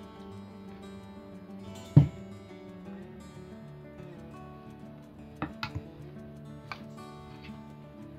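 Background acoustic guitar music, with one sharp knock about two seconds in and a few lighter clicks later as a metal ladle knocks against a glass mixing bowl.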